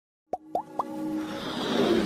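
Logo-intro sound effects: three quick plops, each gliding upward and each higher than the last, then a whoosh that swells toward the end.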